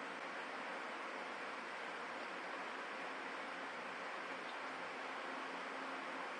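Steady low hiss of room tone, even throughout, with no distinct handling or pouring sounds standing out.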